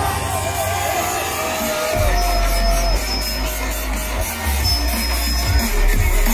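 Loud music over a festival stage sound system, with crowd noise underneath. A wavering melody line carries the first two seconds, then a deep, heavy bass comes in about two seconds in.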